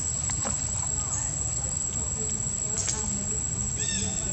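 Outdoor background: a steady low rumble and a constant high-pitched whine, with faint voices. A short call falling in pitch comes just before the end.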